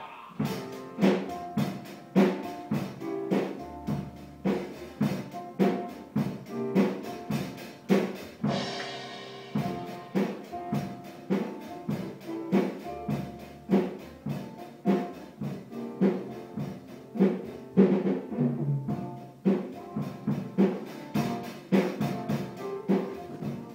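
Acoustic drum kit played in a steady beat of drum strokes, about two to three a second, with a cymbal crash about nine seconds in.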